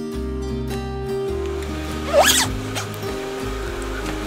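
Background music with steady chords. About two seconds in, a zipper is pulled once, quickly, sweeping up and back down in pitch.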